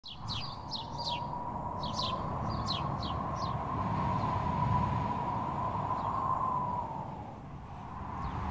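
A small bird chirping: a quick series of short, high, falling chirps in the first few seconds, then stopping. Under it runs a steady hum with a faint even tone that eases off near the end.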